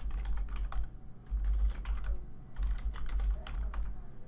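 Typing on a computer keyboard: quick, irregular runs of keystrokes with a brief pause between runs, and a dull low rumble under the keys.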